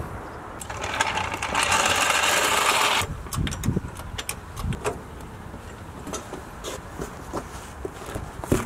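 Mechanical work on a car's front end: a harsh, loud mechanical rattle for about two seconds, followed by scattered metallic clanks and knocks.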